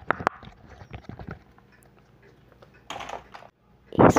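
Plastic fidget toy clicked and tapped right at a microphone for ASMR: a run of sharp little clicks that thins out after about a second, then a brief hiss near the end that stops abruptly.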